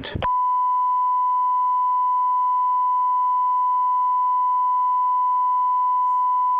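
Broadcast line-up test tone: a single steady, unbroken sine beep at the standard reference pitch, starting a moment in and holding without change.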